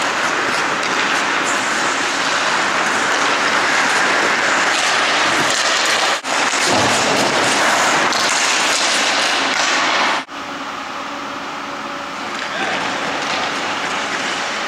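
Hockey skate blades carving and scraping across rink ice as players skate and stickhandle, a steady hiss that breaks off and resumes at cuts about six and ten seconds in, somewhat quieter after the second.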